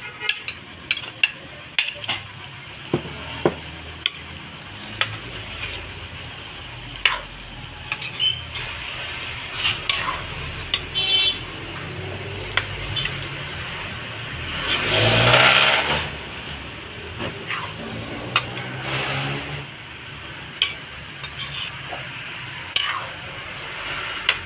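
Metal spatula clicking and scraping against a metal wok while vegetables and shrimp are stir-fried, over a low sizzle. About fifteen seconds in there is one louder rush lasting about a second.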